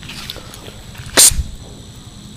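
A dog making one short, sharp, unpitched puff of noise about a second in.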